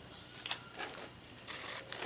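Plastic wrapper on a soft jerky cat treat crinkling and tearing as it is unwrapped by hand, in a few short rustles.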